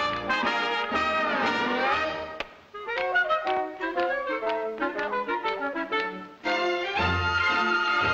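Studio orchestra playing brass-led dance music for a 1940s film musical number: full sustained chords at first, a stretch of short clipped notes in the middle, then the whole band coming back in louder about six and a half seconds in.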